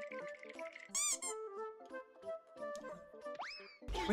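Background music from the compilation, with cartoon-style sound effects laid over it: a short squeak about a second in and a fast rising whistle-like glide a little before the end.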